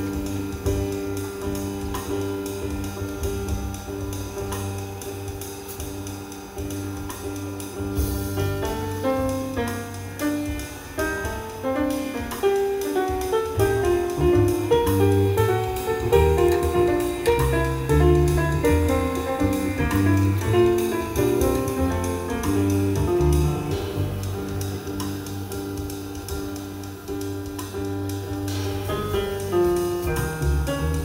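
Live free-jazz trio playing: piano over double bass and drums. It opens with held chords and gets busier and louder about a third of the way in, with fast piano runs.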